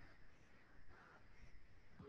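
Near silence: faint room tone and recording hiss.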